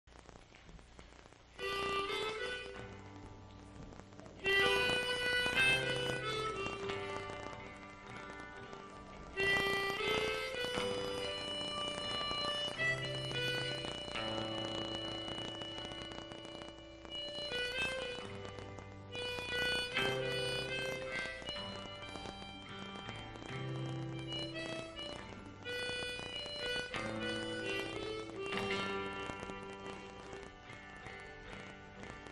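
Live folk music: the instrumental introduction of the song, with sustained melody notes over the accompaniment. It comes in about a second and a half in, and the recording sounds fuzzy.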